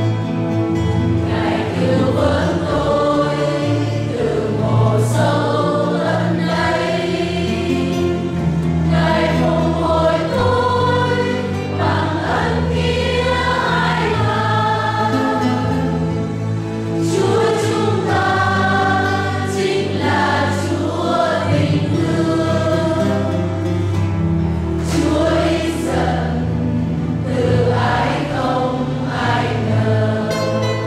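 Church choir singing a hymn over a steady instrumental accompaniment, with held notes that change about every second.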